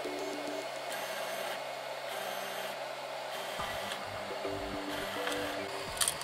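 Prusa i3 A602 3D printer humming with its fans and stepper motors: a steady hum of several fixed tones, with a faint high whine that switches on and off four times. A low rumble joins about halfway through.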